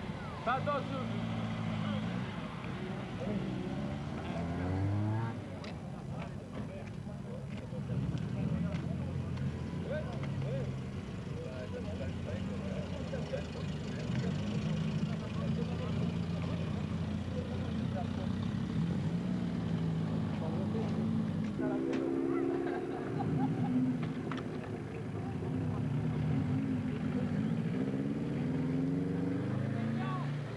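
Car engines running as modified cars drive slowly past one after another, their pitch rising and falling as each one goes by, with voices from a crowd.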